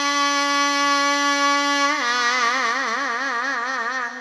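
A Javanese female Tayub singer (waranggana) singing one long sustained note through a microphone. It is held steady, then dips slightly in pitch about halfway and carries on with a wide, even vibrato before it fades out.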